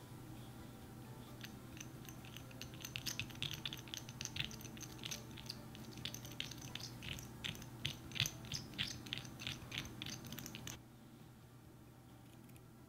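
A small metal utensil stirring a gritty sand-slime mixture in a tiny ceramic bowl: quick, crunchy scraping and clicking strokes, several a second, starting about a second and a half in and stopping abruptly near the end.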